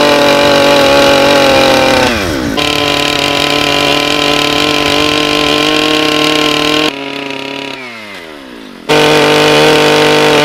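Gas chainsaw running at full throttle, sawing kerfs across a squared log to cut a half dovetail notch. About two seconds in the revs dip briefly. Around seven seconds in the sound drops quieter and the engine winds down, then full-throttle sawing comes back suddenly near the end.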